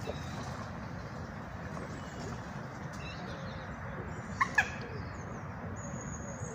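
Two short, sharp animal calls in quick succession about four seconds in, over a steady low outdoor background noise with a few faint bird chirps.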